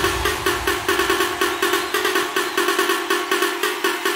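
Hands-up electronic dance track in a breakdown: a pitched riff repeats in quick, even pulses, about four or five a second, with no bass drum underneath.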